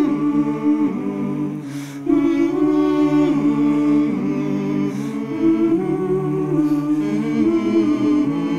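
A mixed group of men's and women's voices singing unaccompanied in close harmony, holding chords that change every second or two. There is a short dip just before two seconds in, then the next chord comes in louder.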